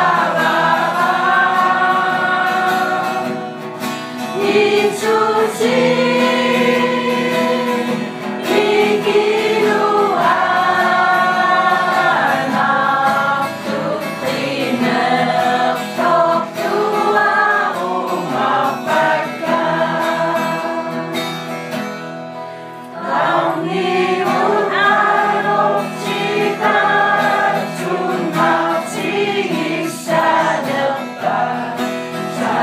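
Music: a choir singing, with long held notes.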